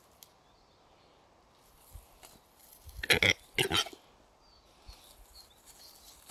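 Displaying male western capercaillie giving two harsh, rasping calls about three seconds in, half a second apart, after a couple of faint clicks.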